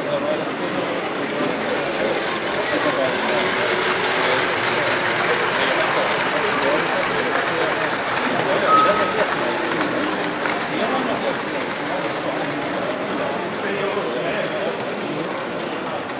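Many people talking at once in a large, echoing hall, an indistinct steady babble, with a brief high tone about nine seconds in.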